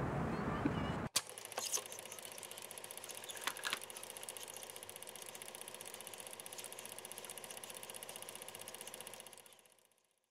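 Faint steady pulsing electronic sound under a closing logo card, with a few soft clicks early on, fading out just before the end. It follows about a second of the old film's own soundtrack noise, which cuts off abruptly.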